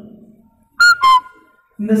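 A two-note descending chime: a short high tone and then a lower one about a quarter second later, each leaving a faint ringing tail.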